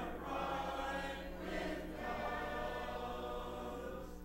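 A congregation singing a hymn together, many mixed voices holding and moving between sung notes.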